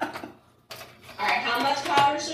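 Laughter trailing off, a brief near-silent pause about half a second in, then voices and laughter again.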